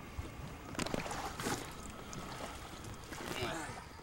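Water splashing and sloshing against the side of a ski boat next to a swimmer holding onto the gunwale, with a few sharper splashes about a second and a second and a half in.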